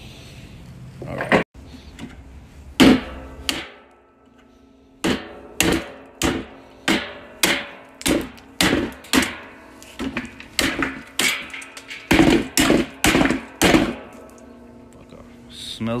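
Hammer blows on a stainless steel washing machine basket, breaking away its plastic rim. A few spaced strikes come first, then from about five seconds in a steady run of about two strikes a second, each ringing briefly.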